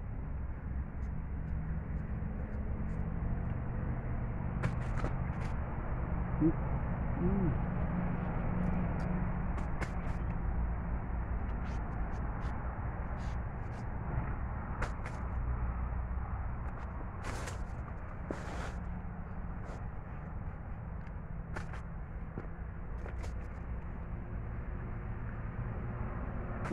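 A knife cutting into the thick green peel of a pequi fruit: scattered short sharp clicks and scrapes, some a little longer around the middle, over a steady low rumble.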